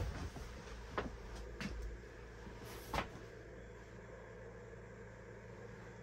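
Quiet interior room tone: a faint steady low hum with a few soft knocks, the clearest about one and three seconds in.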